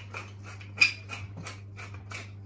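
Wooden pepper mill grinding, a quick run of clicks, with one louder, sharper sound just before the middle.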